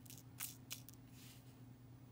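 Faint small clicks of a crystal picker tip and rhinestones against a plastic tray, two sharper ticks close together early on, over a low steady hum.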